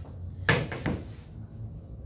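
Two sharp knocks about half a second apart, a hard object tapped or set down on a work table, over a low steady hum.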